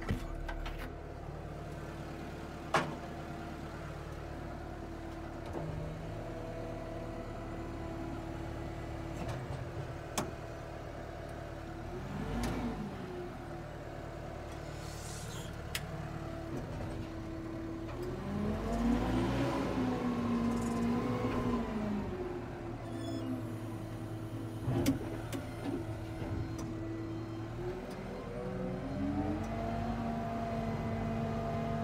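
SkyTrak 8042 telehandler's diesel engine running steadily. The revs rise and fall about 12 seconds in, again for several seconds past the middle, and climb once more near the end as the boom is raised. A few sharp clicks are heard along the way.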